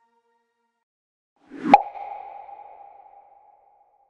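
A single synthetic outro sound effect: a short swell into a sharp hit, leaving one ringing tone that fades away over about two seconds.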